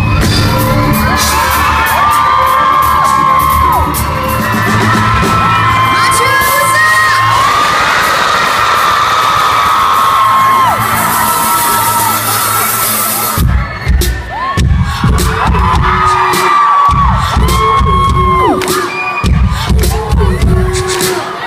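Concert crowd screaming and cheering over the band's live music, heard from within the audience. About thirteen seconds in, the music changes to a heavy bass beat that cuts in and out.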